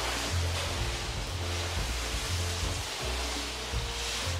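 Water spraying from a hand-held hose nozzle onto a car's body, a steady hiss, with background music's bass line underneath.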